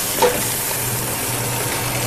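Rabbit pieces searing in hot oil in a stainless steel pot over very high heat: a steady sizzle.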